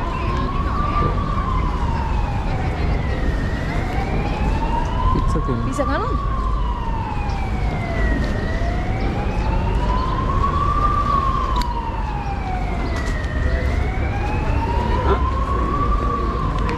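Emergency-vehicle siren wailing, its pitch rising and falling slowly, about one full sweep every five seconds, over a steady low city-street rumble.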